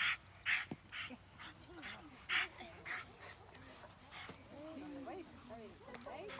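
Police service dog barking in a quick series of sharp barks, about two a second, through the first three seconds, with children's voices faintly behind.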